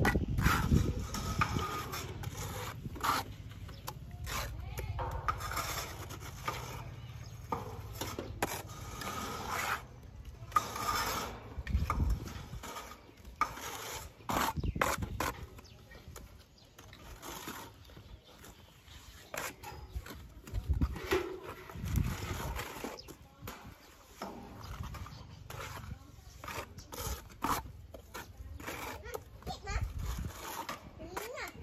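Steel plastering trowels scraping and smoothing wet cement render onto a brick wall, irregular scrapes with occasional taps as mortar is scooped from the pans.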